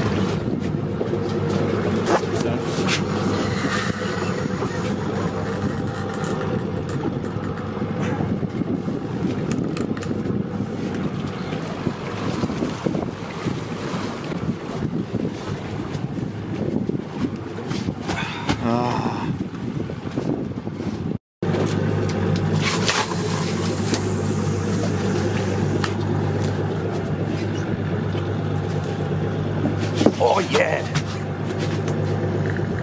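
Boat engine running steadily with a low hum, under wind and water noise; the sound drops out for a moment about two-thirds of the way through.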